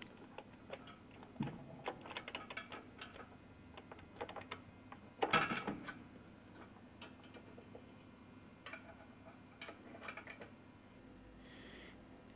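Faint metallic clicks and knocks of loudspeaker rigging hardware being handled: the subwoofer's rear link swung into the flying frame and locking pins pushed home. One louder knock comes about five seconds in.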